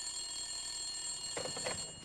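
Telephone ringing: one long, steady ring that stops near the end.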